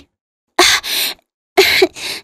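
Two breathy, straining grunts from a woman's voice, the effort sounds of pushing a heavy boulder. The first comes about half a second in, the second about a second and a half in.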